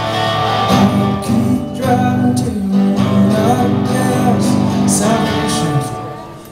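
A live folk-rock band playing: a man singing lead over strummed guitars and upright bass.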